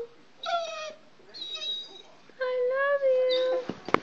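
A dog making drawn-out, howling 'talking' calls: a short call, a thin high whine, then a longer held call. A sharp click at the very end.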